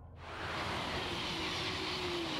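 High-speed electric passenger train passing at speed: a steady rushing noise that swells in a moment after the start, with a faint hum that slowly falls in pitch.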